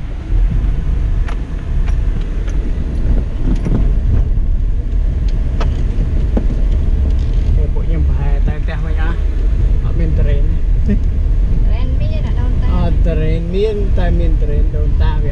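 A car's tyres and engine heard from inside the cabin while driving on a dirt road: a steady low rumble, with scattered small knocks and rattles.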